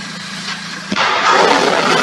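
A Neptune anti-ship cruise missile launching: a sudden loud onset about a second in, then the steady roar of its rocket booster.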